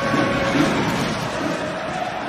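Steady crowd noise of a full ice hockey arena during play.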